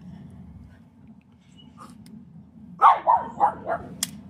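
A dog barking, four short barks in quick succession about three seconds in.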